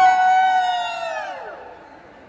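A singer holds one long, high note that slides down in pitch and fades away in the second half.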